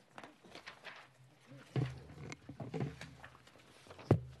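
Sheets of paper being handled and shuffled at a desk microphone: faint, irregular rustles and small knocks, a little louder in the middle.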